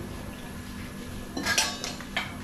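A steel tumbler is set down with a short metallic clatter, a quick cluster of clinks about one and a half seconds in.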